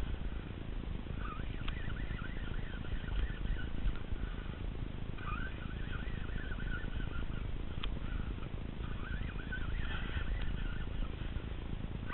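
Steady low rumble of wind on the microphone at open water, with three stretches of high, wavering squeaks a few seconds apart and a couple of sharp clicks.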